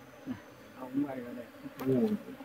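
Honeybees buzzing faintly around an open hive while a comb frame is lifted out, with a sharp click near the end.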